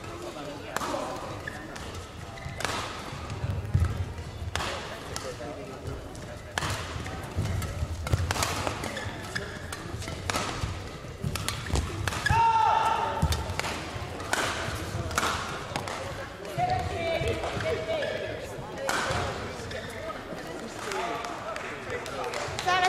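Badminton rally in a large hall: racket strikes on the shuttlecock about every two seconds, the hall ringing after each hit, with a few short shoe squeaks on the court floor.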